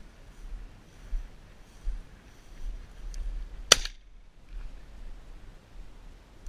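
A single shotgun shot about three and a half seconds in, with a brief echo trailing after it.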